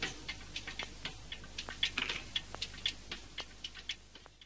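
Faint, irregular clicks, several a second, once the music has stopped, growing sparser toward the end.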